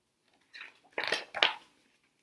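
A page of a picture book being turned by hand: three short rustles of paper, starting about half a second in.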